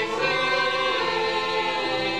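A male lead singer and a choir-like ensemble singing a show tune together on a stage.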